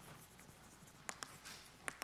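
Chalk writing on a chalkboard: faint scratching strokes, with two sharp taps of the chalk, about a second in and near the end.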